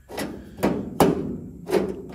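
A hand-formed 16-gauge sheet-steel floor pan section knocking and clanking as it is handled and turned over: four sharp knocks at uneven intervals, each with a short ring.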